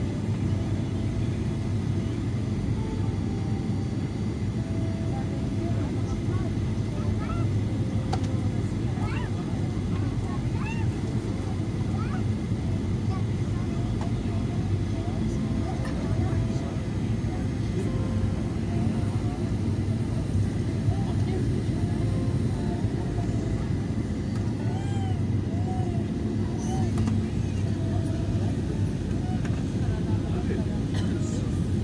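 Airliner cabin noise on the descent to landing: a steady, loud rumble of engines and rushing air, with faint voices in the background.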